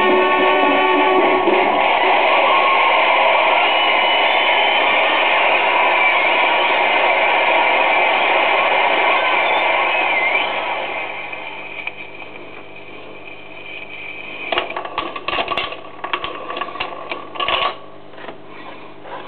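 A 78 rpm record ending on a BSR UA8 Monarch record changer: the last of the music with surface noise fades out about ten seconds in. Then the changer's mechanism cycles, a run of clicks and clunks as the tonearm lifts off and returns to its rest.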